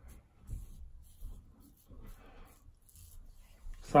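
Double-edge safety razor (Gillette Super Speed) scraping through lathered stubble on the chin and neck: a few faint short strokes.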